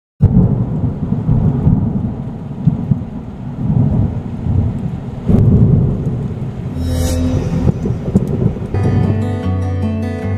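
Thunder rumbling with rain: a loud start followed by several rolling surges of rumble. A brief rushing hiss comes about seven seconds in, and acoustic guitar music begins near the end.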